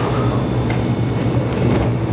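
A steady, low mechanical rumble with a hum, loud and even throughout.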